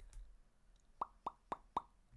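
Four quick mouth pops, evenly spaced about a quarter of a second apart, starting about a second in, each dropping quickly in pitch.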